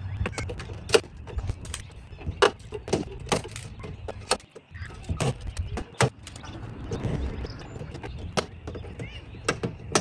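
Butter knife striking and prying into the grooves of a Lippert screwless window frame on an RV door: many sharp, irregular clicks and knocks as the frame's locks are worked loose.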